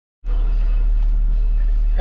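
Steady low rumble of a truck's engine idling, heard from inside the cab. It starts about a quarter second in and holds at an even level.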